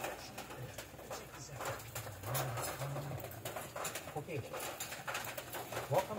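A man's voice talking, low and muffled, playing through computer speakers.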